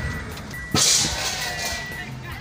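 Road and traffic noise heard from inside a moving car, with a sudden loud rush of hissing noise just under a second in that fades away, and a high steady beep that comes and goes.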